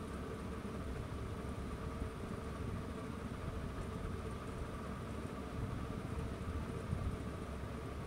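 Steady background hum and noise with no distinct events, like a running fan or distant traffic.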